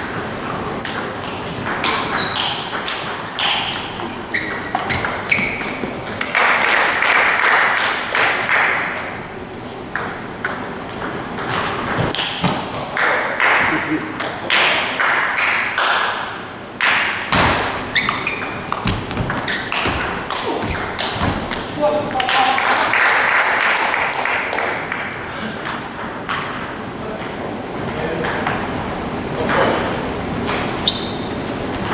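Table tennis ball being struck back and forth: repeated sharp clicks of the ball hitting the paddles and bouncing on the table, in rallies with short pauses between.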